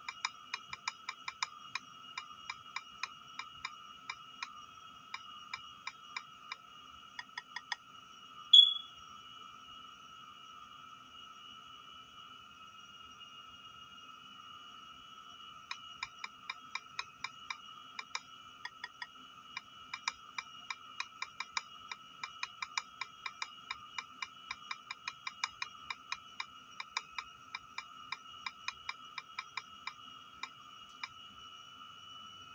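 Key-press clicks from typing on a tablet's on-screen keyboard, about three or four taps a second. They come in two runs with a pause of several seconds in the middle, over a faint steady high-pitched whine. A single short, loud, high chirp stands out about eight seconds in.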